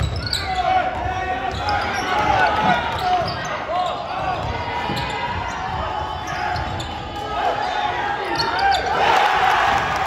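Basketball game in a gym: a ball dribbling on the hardwood floor, sneakers squeaking in short rising and falling chirps, and players and spectators shouting. A louder swell of crowd noise comes near the end.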